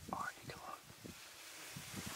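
A person whispering, voice kept low.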